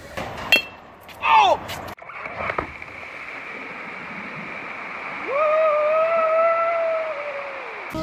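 A batting-cage bat cracks against a ball, followed by a short cry that falls in pitch. Then comes a steady hiss of water spraying over a backyard water slide, with a person letting out one long held yell near the end.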